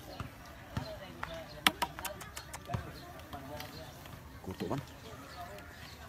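A quick run of sharp knocks and taps about two seconds in, with voices talking in the background and a short spoken word near the end.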